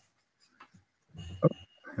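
Near silence on a video-call line, then about a second and a half in a man's short, quiet "oh" with a faint, brief high steady tone.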